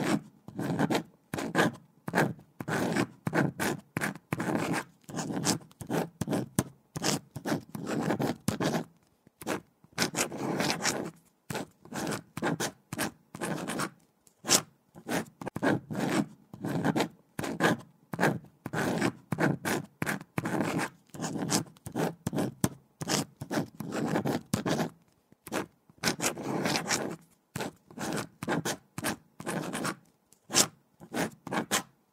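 A pen scratching across paper in a steady run of quick handwriting strokes, broken by short pauses between words.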